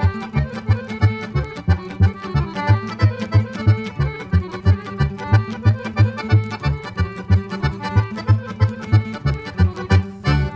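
Instrumental break in a Romanian-language folk song: accordion carries the melody over a steady bass-and-chord beat of about three strokes a second, with no singing.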